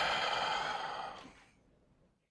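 A man's drawn-out 'uh' trailing into a long audible sigh, fading out about a second and a half in.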